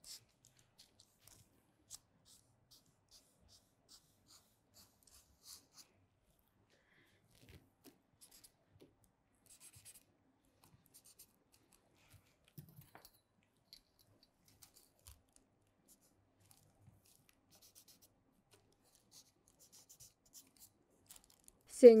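Faint scratching of a felt-tip marker writing on pattern paper, in short strokes, followed by sparse soft taps and scratches of paper being handled. A woman's voice begins right at the end.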